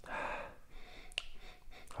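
A man sipping whisky from a tasting glass: a short noisy draw of breath and liquid at the start, then a single small click about a second in.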